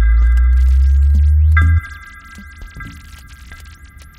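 Electronic music: a loud, deep synthesizer bass drone that cuts off suddenly a little under two seconds in, beneath a high held synth chord that is struck again about one and a half seconds in, with scattered clicks and short gliding tones.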